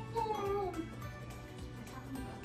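Background music with a short, high-pitched call that falls in pitch during the first second, then a steady low hum.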